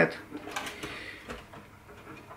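Faint scattered clicks and light rubbing of a nylon classical-guitar string being handled and pulled taut along the neck while it is wound onto its tuning peg.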